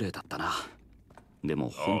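Speech: a character's line of Japanese dialogue from an anime episode, then a man saying "yo" near the end.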